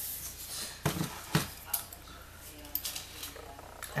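Tabletop handling: a few scattered light knocks and clicks with some paper shuffling as a sheet of scrap paper is moved and a plastic desktop calculator is set down.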